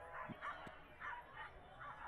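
Corgis barking and yipping faintly, a scatter of short yips.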